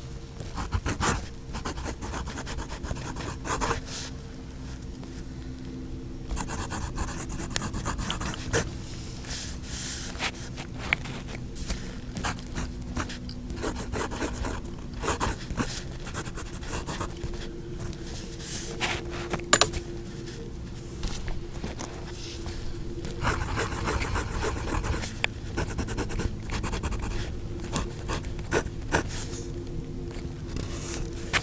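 A fine steel fountain-pen nib scratching across paper as words are written, stroke by stroke, with the light feedback of the nib on the paper. A faint steady hum runs underneath.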